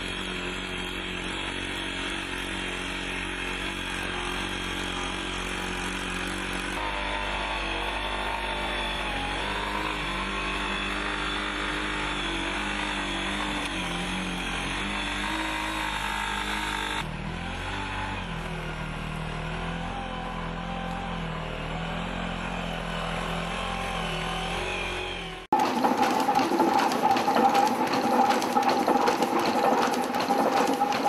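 Legged robot's onboard engine-driven hydraulics droning steadily as it walks: the DARPA LS3 (AlphaDog), which sounds much like a chainsaw. About 25 seconds in the sound cuts abruptly to a louder mechanical whine with a steady high tone and rapid clicking.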